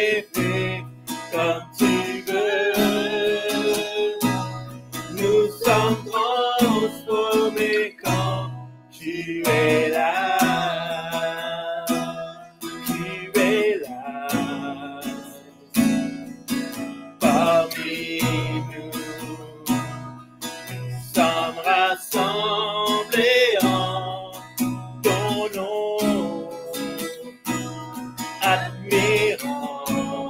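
A man and a woman singing a worship song, accompanied by a strummed acoustic guitar, in phrases with short breaks between them.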